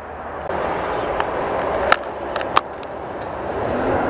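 A few sharp plastic clicks and light rattles as a metal travel bug tag on a ball chain is put into a clear plastic geocache container. A steady rushing background swells twice underneath.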